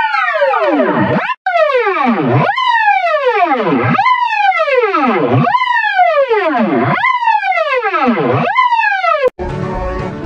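Electronically pitch-warped audio: a single tone with overtones jumps up and glides steadily down, again and again about every second and a half, seven times. Near the end it cuts off abruptly and different music starts.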